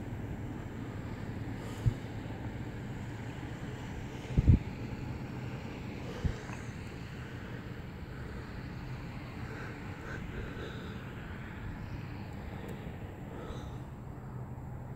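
Steady outdoor background noise with a low hum, broken by three brief thumps on the handheld phone's microphone, the loudest a double thump about four and a half seconds in.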